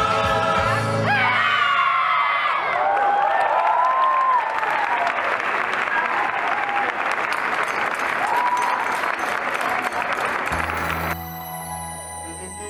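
The dance music stops about a second in, and a theatre audience breaks into applause with whoops and cheers. Near the end the applause gives way to soft keyboard music.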